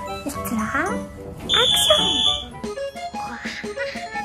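A woman talking animatedly over background music, with a short, high, steady electronic tone about one and a half seconds in.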